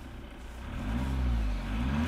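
Jeep Cherokee's 2.2-litre four-cylinder Multijet turbodiesel running and being revved. Its pitch rises and falls about a second in, then climbs again near the end.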